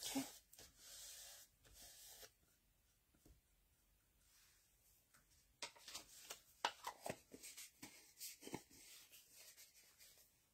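Faint rubbing of fingers pressing and smoothing a paper image into wet gel medium on a journal page, followed after a quiet pause by a few light paper rustles and taps.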